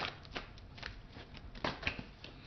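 A deck of tarot cards being shuffled by hand: a handful of short, irregular snaps of card against card.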